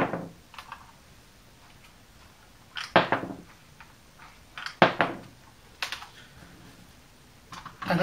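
Hard plastic toy bombs dropping one at a time out of a thumb-wheel bomb bay and clattering onto a tabletop: a sharp clack at the start, another about three seconds in, a louder one about five seconds in and a lighter one a second later.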